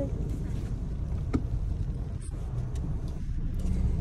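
Steady low rumble of a car on the road, heard from inside the cabin, with a brief click about a second and a half in.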